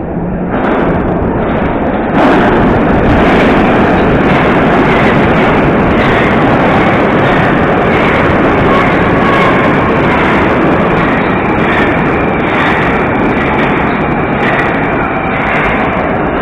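A Moskva 2020 (81-775/776/777) metro train arriving at an underground station: loud, steady running noise that jumps up about two seconds in as the train enters the platform, then continues as it rolls along the platform slowing down, with a faint high whine in the mix.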